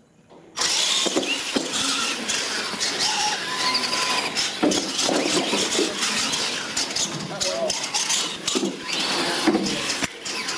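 Radio-controlled monster trucks launching and racing across a hard floor: a loud, continuous motor and drivetrain whine mixed with tyre noise, starting suddenly about half a second in, with many short knocks as the trucks hit the floor and the obstacles.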